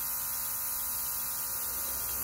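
Wireless touch-up spray gun running: a steady hum from its small motor with a hiss of air.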